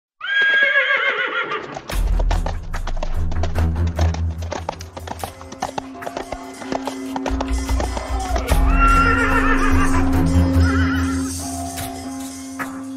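Horse neighing at the start, then a run of hoofbeats over background music with a deep bass, and a second neigh about nine seconds in.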